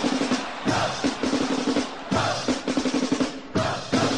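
Music led by drums: rapid snare drum rolls and bass drum hits over a steady low note, in phrases broken by short gaps about every second and a half.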